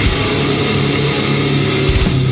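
Death metal/grindcore music: heavily distorted, down-tuned guitars and bass holding a droning chord, with no drum hits in this stretch.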